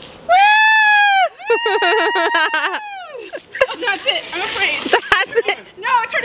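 A swing rider's high voice letting out a long "whoa" cry, then a wavering, quavering cry, followed by mixed chatter and laughter from the group with a few sharp clicks.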